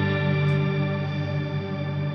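Guitar chord frozen into a steady, unchanging wash by a Strymon reverb pedal's infinite-sustain hold, with no new notes played.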